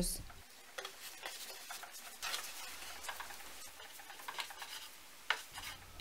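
Hands working a soft, risen dough on a floured wooden board: faint rustling and patting with a few light clicks.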